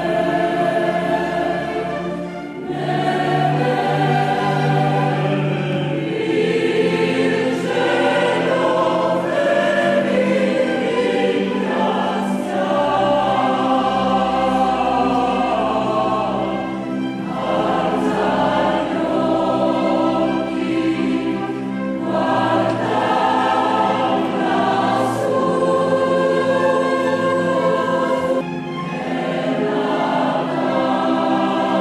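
Choral Christmas music: a choir singing long held chords with accompaniment, in phrases that break off briefly every few seconds.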